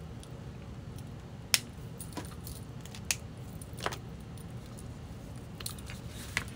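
A handful of sharp, light clicks and taps from craft tools and paper being handled on a desk, the loudest about a second and a half in, over a low steady room hum.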